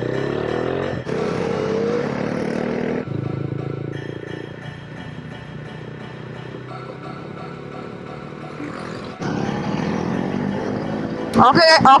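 KTM motorcycle engines pulling away and accelerating, the revs rising in the first couple of seconds, then running on through the bends, softer in the middle. The sound changes abruptly a few times, and a voice starts near the end.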